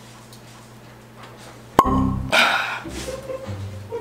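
A cork pulled from a wine bottle with a wing corkscrew: a quiet stretch, then one sharp pop about two seconds in as the cork comes free, followed by a short burst of softer noise.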